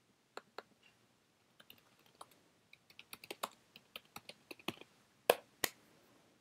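Typing on a computer keyboard: a few scattered keystrokes, then a quick run of them, ending in two louder clicks about five seconds in.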